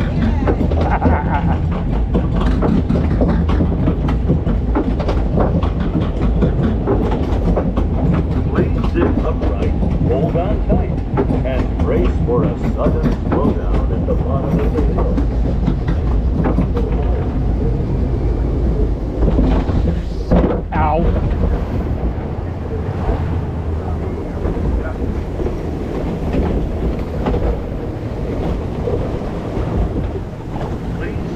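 A log flume boat is carried up the lift hill by its conveyor. It makes a continuous clattering rattle over a steady low drone.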